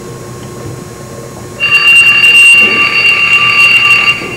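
A loud, steady electronic telephone ring that starts suddenly about one and a half seconds in and holds to the end, played as a sound effect in a stage drama.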